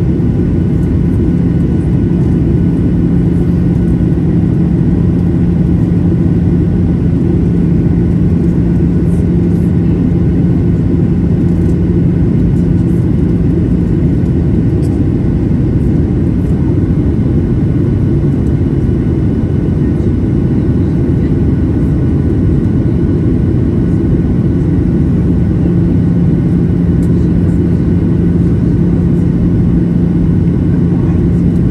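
Steady cabin noise of a Boeing 737-800 in flight, heard from a window seat over the wing: a loud, even low rumble of its CFM56-7B engines and the airflow. A steady low hum sits in it, fades out about halfway through, and comes back in the last few seconds.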